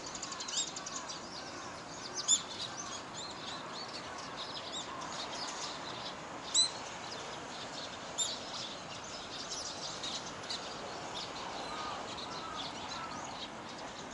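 Small songbirds chirping over steady background noise, with three louder, sharper chirps about two, six and a half and eight seconds in.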